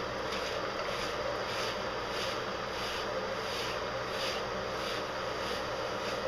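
Fingertips massaging shampoo through a wet, lathered Old English Sheepdog coat, making soft swishing rubs at a steady pace of about three strokes every two seconds, over a steady background hum.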